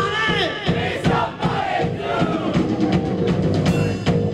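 A rock band playing live at full volume: a drum kit beating a steady rhythm under electric guitars and a wailing lead line, with a crowd shouting along.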